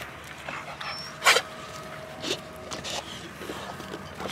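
American bully dogs playing in a yard, with one short, sharp dog vocalization about a second in and a few fainter short sounds after it.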